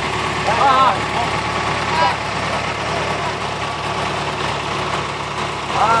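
Heavy diesel machinery engine running steadily at idle throughout, with a few short shouts from the work crew.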